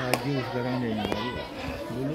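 Children's voices talking and calling out, one drawn-out vowel among them, with a single sharp clap or knock about a second in.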